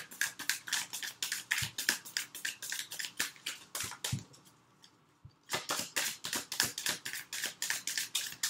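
Deck of oracle cards being shuffled overhand by hand: a quick run of crisp card flicks, about four to five a second, breaking off for about a second midway and then starting again.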